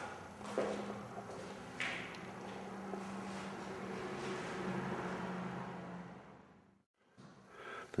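Faint room tone with a low steady hum and a couple of light clicks, as from a handheld camera being moved; the sound drops out completely for a moment near the end.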